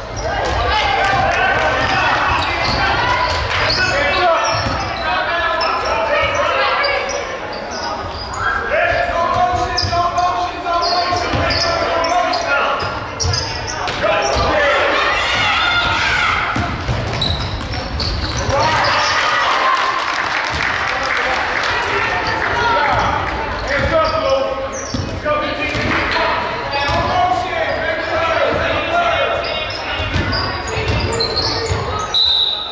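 Basketball bouncing on a hardwood gym floor as players dribble during live play, among overlapping shouts and chatter from players and spectators, echoing in the large hall.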